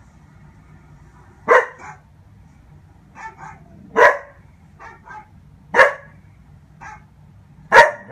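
Doberman puppy barking: four loud single barks about two seconds apart, with quieter short sounds in between.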